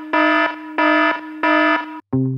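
Electronic alarm-style beep sound effect: a steady pitched tone repeating in three even beeps, about one and a half per second.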